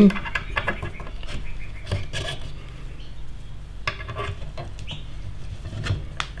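Small metal clicks, taps and rubbing as a metal drill jig and its locating pegs are set back into a propeller's bolt holes, over a steady low hum.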